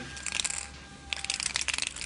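Crinkling, crunching handling noise in two bursts: a short one just after the start and a longer, denser crackle from about a second in.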